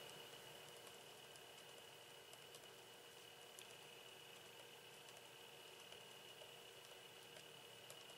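Near silence: a faint steady hiss with a thin high-pitched whine, and a few faint scattered ticks from a felt-tip pen writing on paper.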